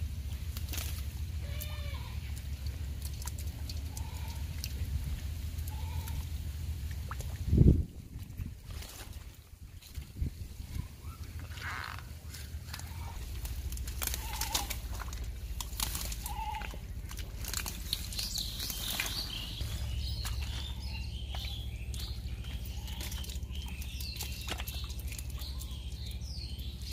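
Outdoor ambience of birds calling and chirping, busier in the second half, over a low steady rumble, with one loud thump about eight seconds in.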